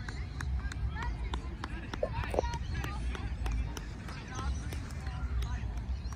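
Distant shouts and chatter from young players and sideline spectators at an outdoor football match, over a steady low rumble, with scattered short clicks.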